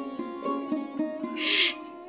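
Background instrumental music of plucked string notes, sitar-like, stepping from pitch to pitch, with a short breathy sound about halfway through.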